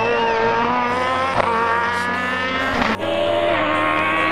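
Peugeot 207 Super 2000 rally car's engine pulling hard, its pitch climbing steadily as the car accelerates out of a hairpin. The sound breaks off abruptly about three seconds in.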